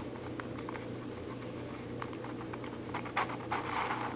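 Plastic pieces of a Royal Pyraminx, a six-layer pyramid twisty puzzle, clicking and rubbing as its layers are turned by hand, with a few sharper clicks about three seconds in.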